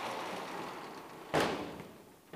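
Chalk knocking once, sharply, against a blackboard about two-thirds of the way in, with a short ring in the room; otherwise low room noise.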